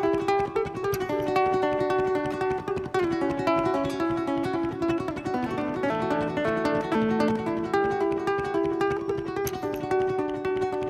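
Acoustic guitar with a classical-style slotted headstock played solo and fingerpicked, a steady stream of short plucked notes with no singing.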